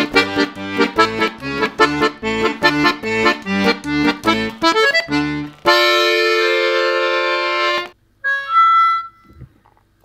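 Bayan (Russian button accordion) played with both hands together: a quick rhythmic run of short chords over alternating bass notes, then one long held chord that cuts off about eight seconds in.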